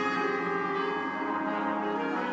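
Orchestral music with brass and bell-like chimes holding sustained chords, the harmony shifting near the end.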